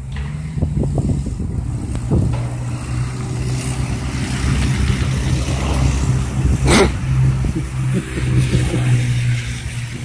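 A motor vehicle engine running steadily, growing louder through the middle and easing near the end, with a single sharp click about two-thirds of the way through.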